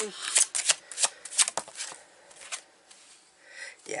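Tarot cards being shuffled and handled: a quick run of light, sharp card clicks and flicks for the first two seconds or so, then quieter, sparser handling as a card is drawn.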